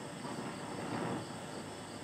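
Quiet outdoor ambience: a faint steady hiss with thin, steady high tones.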